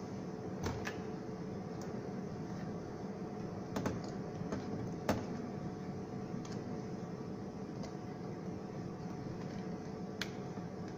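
A few sharp clicks and knocks of plastic being handled: the water ionizer's housing is turned over and its pipe fittings touched, with the loudest knock about halfway through. A steady low hum runs underneath.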